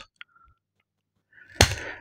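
Close-miked mouth sounds in a pause: near silence, then about one and a half seconds in a sharp lip click followed by a short in-breath.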